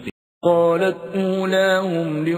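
A male reciter chants Quranic Arabic in a slow, melodic tajweed style, holding long drawn-out notes. It starts after a brief silence about half a second in.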